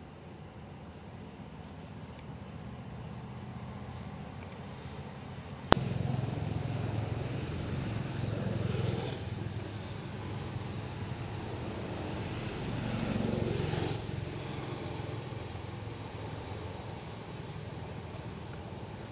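Motor traffic running in the background, a low steady engine hum that swells twice as vehicles pass. A single sharp click about six seconds in, after which the sound is louder.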